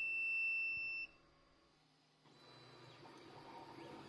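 3D printer's buzzer sounding one continuous high-pitched beep that cuts off about a second in: the filament run-out alarm. After a moment of near silence a faint low hum comes in.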